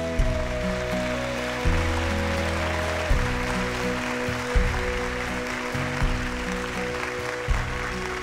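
Country band music, a low bass note landing about every second and a half under held tones, with audience applause coming in at the start and running over the music.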